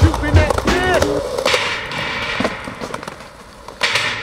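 A hip hop track with rapping and a heavy beat cuts out about a second in. The camera's own sound follows: a skateboard's wheels rolling over rough concrete with scattered clicks, and a loud, sharp clack of the board just before the end.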